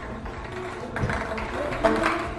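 Background music with a plucked-guitar sound, with a couple of short knocks, about a second in and near the end, from balls rolling through a wall-mounted plastic tube track.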